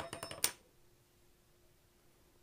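A quick run of small clicks and scrapes lasting about half a second: a needle tool and fingers working a clay slab on a stopped pottery wheel. It is followed by quiet with a faint steady hum.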